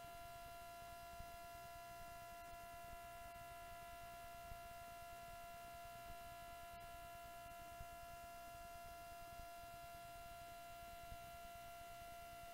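Near silence: a faint, steady electrical hum made of several unchanging high tones over low room noise, with a few faint ticks.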